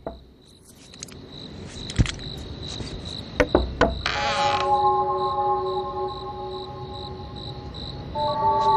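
Crickets chirping steadily as night-time ambience in a cartoon soundtrack, with a few sharp clicks, and a held, sustained music chord coming in about halfway through.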